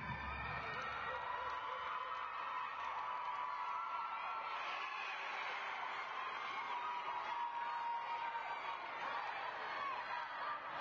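Many voices of teammates and spectators cheering and calling out at once, with whoops, over a gymnast's balance beam routine.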